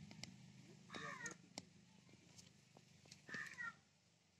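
Two short, faint animal calls, one about a second in and one near the end, over near-quiet surroundings with a few small clicks.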